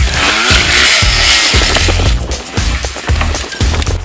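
Trials motorcycle engine revving as the bike is hopped over tractor tyres, mixed with background music with a steady beat. A loud rushing hiss fills roughly the first two seconds.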